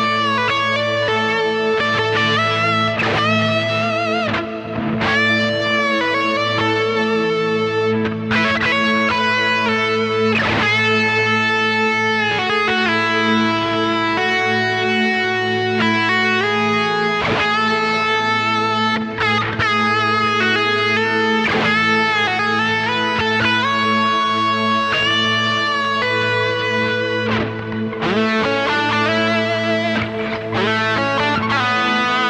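Electric guitar playing an improvised single-note lead line with bends and slides, built on the notes of a solo, over a sustained ambient pad holding low notes throughout.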